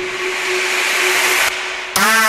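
Big-room EDM build-up: a swelling white-noise riser over a single held synth note, with the bass and kick dropped out. The drop hits right at the end with a loud, bright horn-like synth lead.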